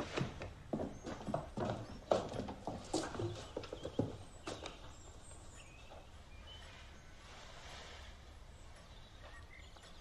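Horses' hooves clip-clopping: a run of uneven hoof strikes over the first four or five seconds, then only a faint hiss.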